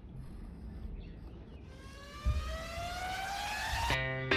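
A rising electronic sweep in the background music, a stack of tones climbing steadily in pitch for about two seconds as it builds into the next track, with a low thump partway through.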